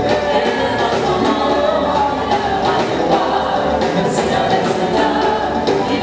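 A gospel choir singing in harmony with a live band, drums keeping a steady beat under the voices.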